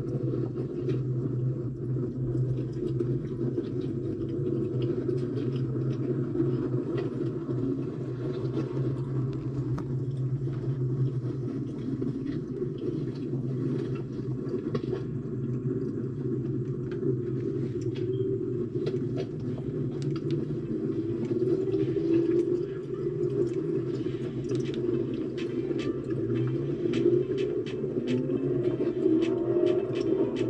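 Race car engines running on a nearby racetrack, heard as a steady low rumble, with an engine revving up several times near the end.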